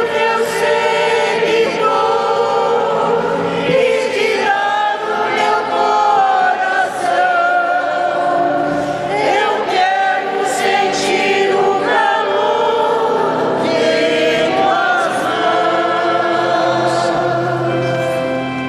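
A church choir singing a hymn in held, sung phrases with brief breaks between lines.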